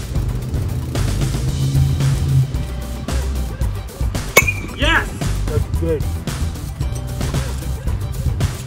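Background music plays throughout. About four seconds in, a bat hits a pitched baseball with a single sharp crack that rings briefly, followed by short vocal sounds.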